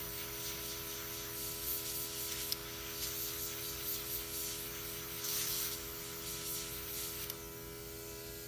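Luminess Air makeup airbrush spraying eyeshadow in several hissing bursts over the steady hum of its running compressor. The hissing stops near the end while the hum carries on.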